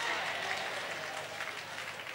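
Faint applause from a congregation: many small claps blending into a steady patter.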